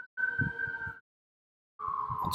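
Fire truck siren wailing, a steady tone slowly rising in pitch. It cuts out to dead silence about a second in and comes back, slightly lower, just before the end.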